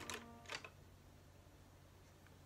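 Near silence: room tone, with two short faint clicks in the first half-second from a makeup palette being handled.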